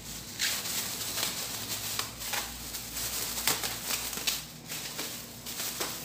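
Thin disposable plastic gloves crinkling and rustling in irregular crackles as they are pulled onto the hands.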